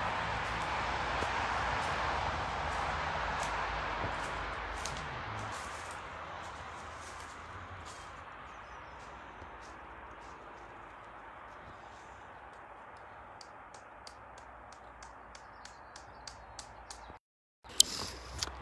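Outdoor background noise: a steady hiss that fades gradually over the first dozen seconds, with scattered faint clicks.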